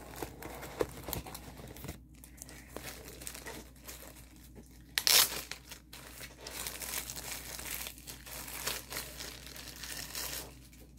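Plastic packaging of a diamond painting kit crinkling and rustling as it is handled, in irregular bursts with one louder crinkle about five seconds in.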